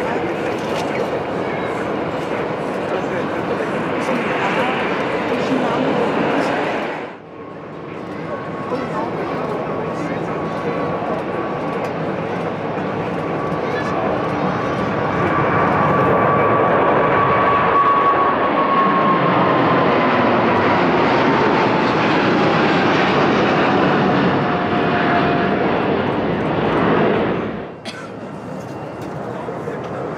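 Airliner jet engines at takeoff power. First an Airbus A320 runs on the runway. After a break about a quarter of the way in, the GE90 engines of a Boeing 777-300ER run at takeoff thrust: a steady noise with a high engine whine that holds, then falls in pitch as the jet climbs past, and cuts off abruptly near the end.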